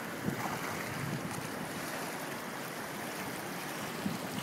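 Turbulent white water rushing and churning steadily through a concrete slalom canoe channel, with wind buffeting the microphone.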